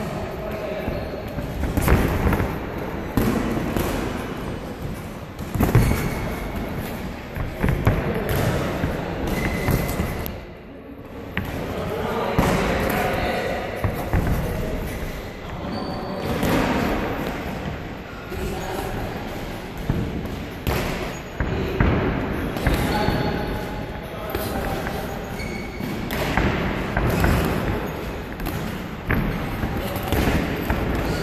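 Boxing gloves landing in sparring: irregular dull thuds of punches on gloves, arms and headgear, with voices talking in the background.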